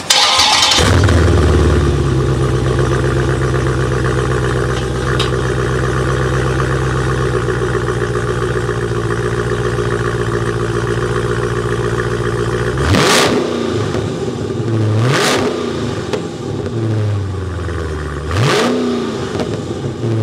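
Dodge Challenger Scat Pack's 6.4-litre 392 Hemi V8 starting with a flare of revs, then settling into a steady idle. After about thirteen seconds it is revved three times in quick throttle blips, two to three seconds apart, each rising sharply and falling back to idle.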